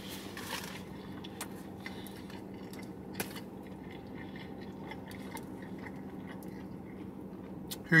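A person chewing a mouthful of cheesesteak with faint mouth clicks, over a steady low hum. One sharper click comes about three seconds in.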